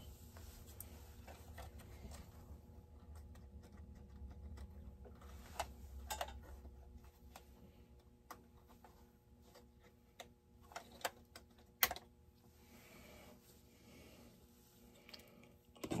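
Quiet handling of a chainsaw's plastic top cover and housing: scattered light clicks and taps as the cover is worked loose, a few about halfway through and a short cluster a little later, the sharpest click among them.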